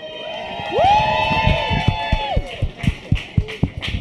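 A small audience cheering: several voices whoop, one rising into a long held "woo" that lasts about a second and a half, over scattered hand clapping that runs on to near the end.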